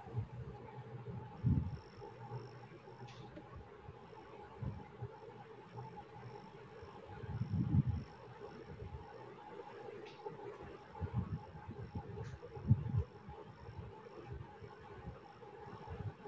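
Faint background noise from an open video-call line: a steady low hum with a faint high tone pulsing about twice a second, and a few low, muffled bumps.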